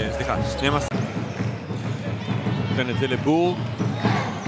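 A basketball being dribbled on a hardwood arena court, with voices over it.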